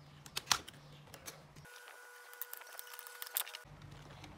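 Light clicks and taps of hands handling a multimeter and the opened plastic shell of a battery-powered toy elephant, the sharpest click about half a second in. For about two seconds in the middle, a faint steady tone.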